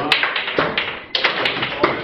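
Foosball table in play: a quick, irregular series of sharp knocks from the ball and the rod figures.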